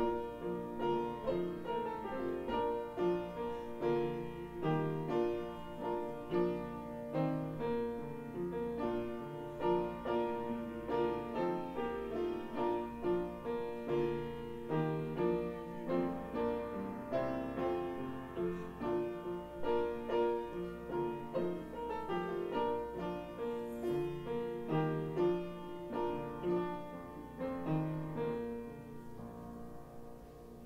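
Solo piano playing a slow, steady piece, each struck note ringing and fading into the next.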